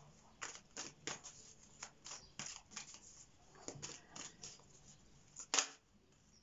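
A deck of oracle cards being shuffled by hand: a string of short, irregular card slaps and swishes, with the sharpest snap about five and a half seconds in.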